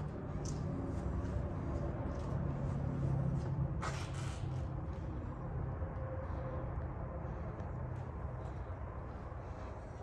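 Steady low hum of a large indoor building, with one brief rustle about four seconds in.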